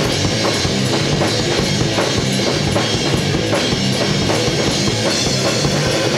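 A rock band playing live: a drum kit beating steadily under electric guitars, loud and continuous.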